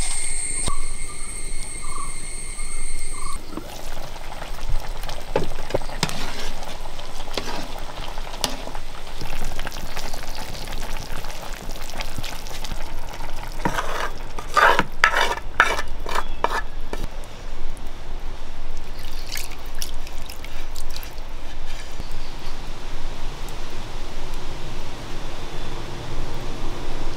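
Jackfruit seed curry sizzling in an iron kadai over a wood fire. About halfway through, a metal spatula scrapes thick coconut paste into the pan in a quick run of scrapes, then the curry is stirred.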